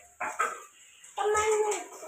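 A young child's wordless voice: a short yelp, then a longer held call starting about a second in.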